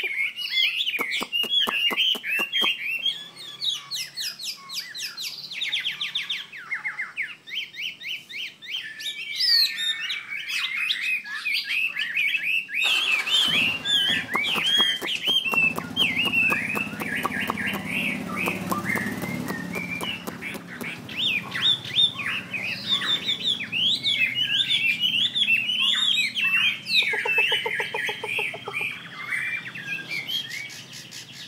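Caged Chinese hwamei singing a long, varied song of whistled, sliding phrases mixed with fast runs of repeated notes, with only brief pauses.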